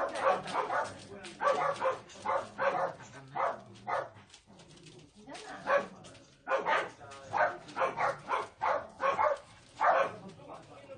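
Dogs barking, a steady run of short barks a few each second, breaking off about four seconds in and starting again a couple of seconds later.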